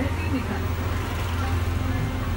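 Steady low rumble of background noise with faint voices behind it.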